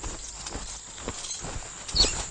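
Faint clopping steps at an uneven pace, hooves or feet on a path, in a film scene's soundtrack, over a low background hiss.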